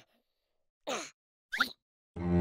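Two short cartoon sounds: a brief plop with a falling pitch about a second in, then a quick rising squeak half a second later.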